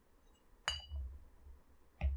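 A glass bottle clinks once, sharply, a little over half a second in, with a short bright ring that fades quickly. Low dull bumps of the bottle being handled follow.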